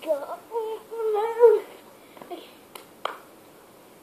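A child's voice calling out "go" in a drawn-out, sing-song way for the first second and a half, then two short sharp clicks about three seconds in.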